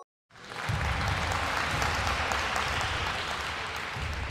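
Applause sound effect: a crowd clapping steadily, starting abruptly about a third of a second in after a brief silence.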